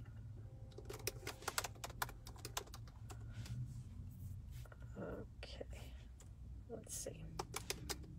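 Typing on a smartphone: a quick run of light taps about a second in and a few more near the end, over a low steady hum.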